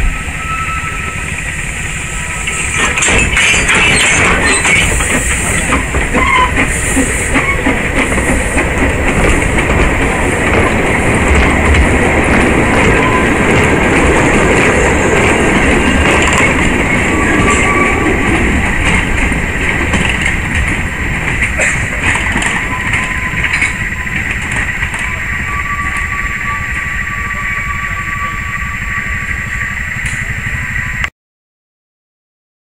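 Narrow-gauge passenger train running on the line, its wheels clattering on the track. The sound grows loud about three seconds in and eases off in the last few seconds as the train draws away.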